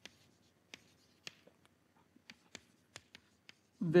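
Chalk writing on a blackboard: about nine short, irregular chalk ticks and strokes, fairly quiet.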